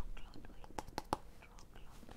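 Two people whispering quietly to each other, with a few soft clicks about a second in.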